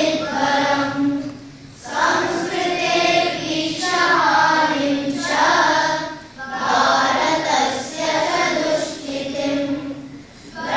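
A group of children chanting verses in unison in a melodic recitation. The phrases last about four seconds each, with short pauses for breath between them: one less than two seconds in and another about six seconds in.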